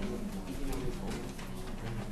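Low, murmured voices in a meeting room, with papers being handled.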